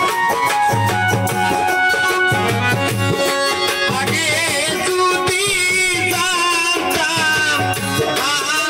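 Live folk music from a small band: an electronic keyboard playing the melody over a dhol beating a steady, repeating rhythm. About halfway through, a wavering melody line with heavy vibrato joins in.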